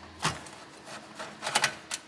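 Phillips screwdriver backing a screw out of a sheet-steel drive cage: a run of small metallic clicks and scrapes, the sharpest ones in the second half.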